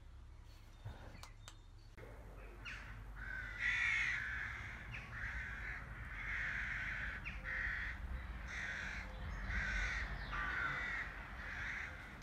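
A crow cawing repeatedly: a long series of harsh calls, roughly one a second, starting about three seconds in, over a low steady background rumble.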